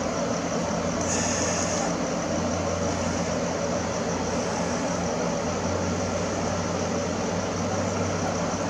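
Steady low mechanical hum with a faint, steady high-pitched whine above it; no sudden events.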